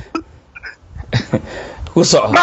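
A man laughing quietly in a few short, breathy bursts, with a louder one about a second in.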